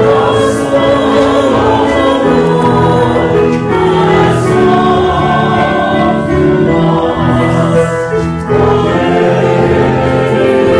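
Church choir singing a slow liturgical song with keyboard accompaniment, in long held chords.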